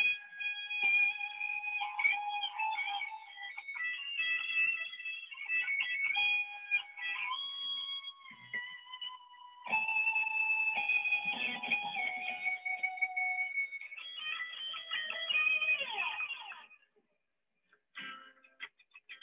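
Electric guitar played solo in melodic lines with many held notes, sounding thin over a video call. The playing stops shortly before the end.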